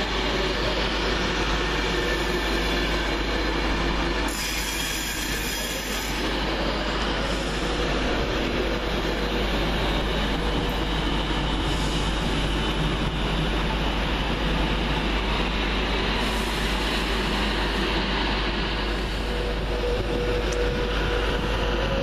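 Virgin Trains Class 390 Pendolino electric train moving along the track, a steady, continuous noise of wheels on rail.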